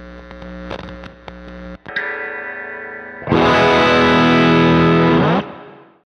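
Short music sting of distorted, effects-laden guitar. A held drone is followed by a brief break and a new chord, then a much louder distorted chord enters a little over three seconds in and rings for about two seconds before it cuts off and fades away.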